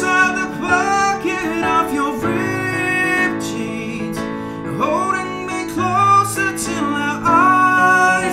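A man singing a pop ballad chorus over sustained piano chords from a Steinway Grand Piano software instrument, some held notes wavering with vibrato.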